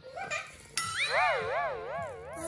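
A sudden electronic tone, rich in overtones, starts about three quarters of a second in. It holds a level pitch briefly, then wobbles evenly up and down about three times a second, like an added cartoon sound effect.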